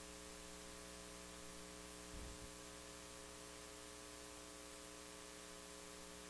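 Near silence: a faint, steady electrical hum with light hiss, and a faint low bump about two seconds in.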